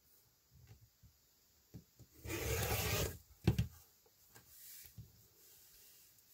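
Rotary cutter rolling through cotton fabric along an acrylic ruler on a cutting mat: one cutting pass lasting under a second, about two seconds in, then a sharp knock and a few faint handling sounds.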